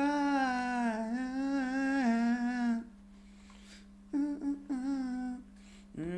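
A man humming a melody in long held notes: one phrase of almost three seconds, a pause of about a second, then a shorter phrase, with a third starting at the end.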